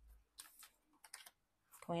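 A few light, scattered clicks and taps of tarot cards being handled and drawn from the deck, then speech begins at the very end.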